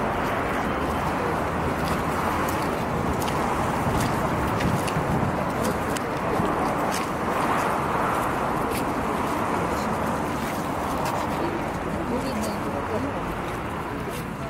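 Steady outdoor city street noise with indistinct voices of people standing around and a few faint clicks.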